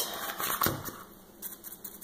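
Handling sounds of a fabric-covered pumpkin: a soft knock about two-thirds of a second in, then faint, irregular crackly ticks as a foam sponge brush dabs wet Mod Podge onto the fabric.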